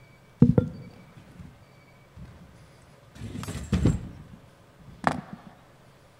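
Handling noise picked up by a microphone: a couple of sharp knocks about half a second in, a scraping, rumbling stretch a little past the middle, and another knock near the end.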